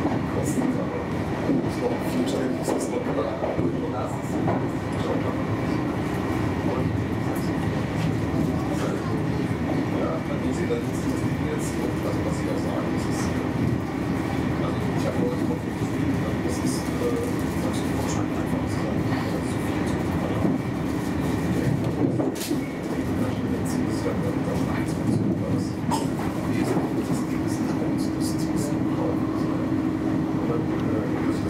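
Intercity train running at speed, heard from inside behind the driver's cab: a steady rumble of wheels on rail with scattered sharp clicks as the wheels pass over the track.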